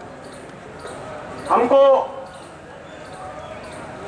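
A man's voice over a public-address loudspeaker: one short, loud utterance about one and a half seconds in, with a steady background hiss of the open-air gathering before and after it.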